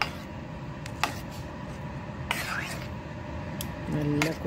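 A metal spoon clinking against a steel pot while stirring thick pudding: a sharp clink at the start and another about a second in, over a steady background hum.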